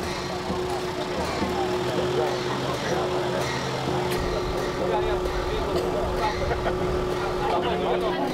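Background chatter of people talking over one another outdoors, with no clear words, over a steady low engine-like hum and rumble.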